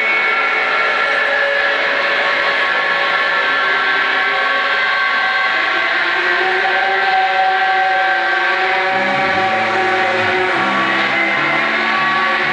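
Live rock band's amplified electric guitars holding a loud, sustained distorted drone. A bass guitar line of stepping low notes comes in about nine seconds in.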